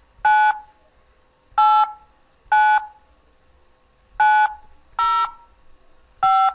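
Telephone keypad touch-tones (DTMF) from a Skype dialpad: five separate beeps of about a third of a second each, at uneven gaps. They are digits of the eighth group of a Windows installation ID being keyed in for Microsoft's automated phone activation line.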